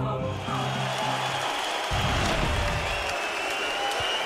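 A broadcast music sting ending about a second and a half in, over arena crowd noise that carries on through the rest.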